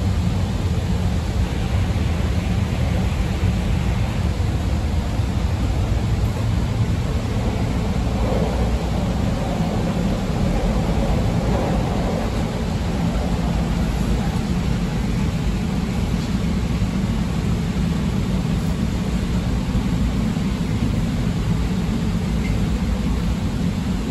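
Steady running noise of a CTA 5000-series rapid-transit car heard from inside the car: a constant low rumble of wheels on rails and traction motors as the train travels between stations.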